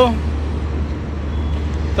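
Steady low rumble with nothing else standing out, after the last syllable of a man's voice fades at the very start.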